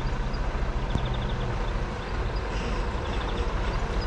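Diesel engine of a Mercedes-Benz semi-truck running as the truck drives slowly closer, a steady low rumble and hum. Short rapid high trills come about a second in and again near the end.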